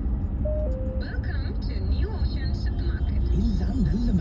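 Steady low rumble of a car driving, heard from inside the cabin, with music and a voice playing over it and a brief two-note tone about half a second in.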